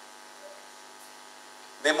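Steady electrical mains hum. A man's voice begins a short word near the end.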